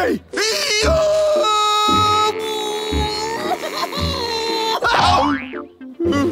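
Cartoon soundtrack of comic music and sound effects under a long, held pitched sound while a frog character strains to tug a clump of grass out of the ground, with a quick rising glide about five seconds in.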